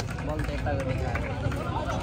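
Voices of people talking and calling out around an outdoor basketball court, over a steady low rumble.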